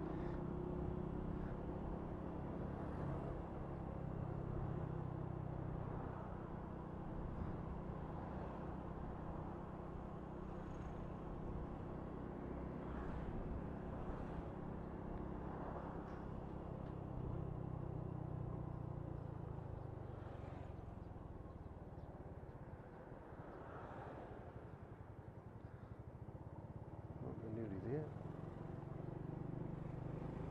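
Honda Wave 125's single-cylinder four-stroke engine running as the motorbike rides through town traffic, with wind and road noise. The engine note drops away about two-thirds of the way through as the bike slows.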